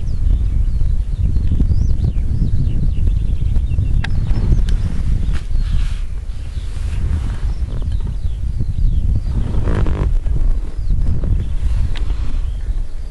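Wind buffeting the microphone in a loud, low, uneven rumble, with faint high bird chirps over it.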